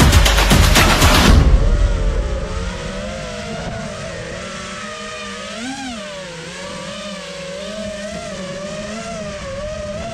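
Background music with a beat for the first second or so, then an FPV racing quadcopter's brushless motors and propellers whining, heard from the onboard camera. The pitch wavers up and down with the throttle, with a brief sharp rise near the middle.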